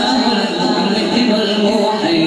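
A young man's voice singing an unaccompanied devotional chant (a naat) through a microphone and PA system, in long held, winding notes.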